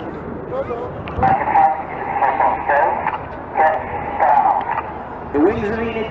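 Indistinct voices talking over a steady low background rumble.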